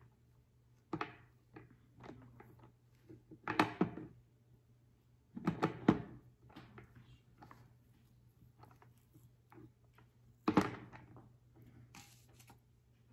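Hands handling a clay pot and things on a tabletop: a few scattered thumps and rustles, the loudest about halfway through and near the end.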